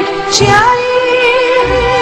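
A song: a woman's voice sings a wavering melody over instrumental backing, with a short percussive hit about half a second in.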